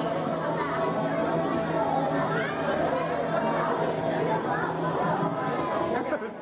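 Chatter of children and adults in a large hall, with a steady music track underneath.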